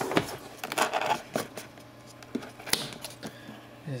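A cardboard product box being opened and handled: scattered taps, scrapes and sliding rustles of the cardboard, with a sharp tap just after the start and another under three seconds in.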